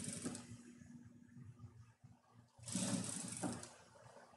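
Industrial straight-stitch sewing machine running a short burst of stitches, about a second long, a little before the end, sewing a holding stitch along a zipper tape.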